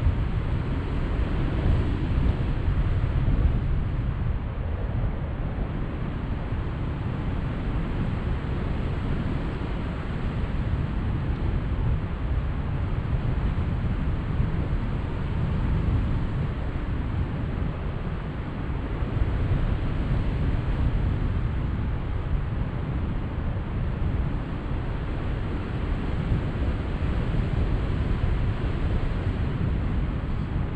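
Airflow of a tandem paraglider in flight buffeting the microphone of a selfie-stick camera: a steady low rushing of wind noise, with no other sound standing out.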